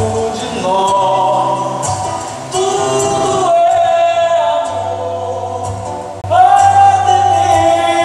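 A man sings a slow song with his own acoustic guitar accompaniment, holding long notes. A louder sung phrase comes in about six seconds in.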